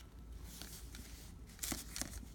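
Hands handling a fountain pen over a sheet of paper: a soft rustle, then one brief scratchy scrape of hand and paper about three-quarters of the way in.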